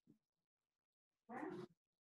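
Near silence: room tone, broken once a little past the middle by a short, faint voice-like sound.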